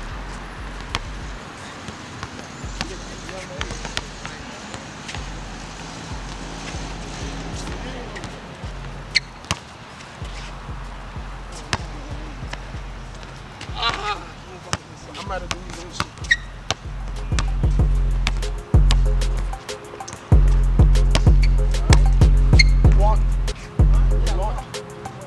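A basketball bouncing on a hard outdoor court, in sharp repeated knocks, over background music with a deep bass beat that gets much louder about two-thirds of the way through. A short burst of voice comes in the middle.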